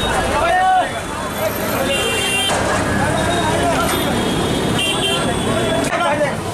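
Busy street with people talking, and short horn toots about two seconds in and again near five seconds.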